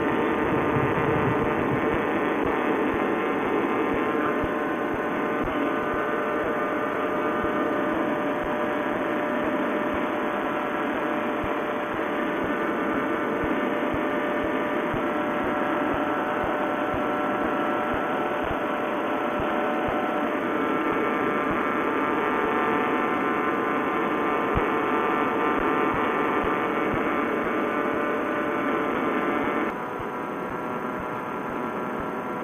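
Single-cylinder two-stroke paramotor engine (Vittorazi Moster) running steadily at cruising power in flight, a constant drone.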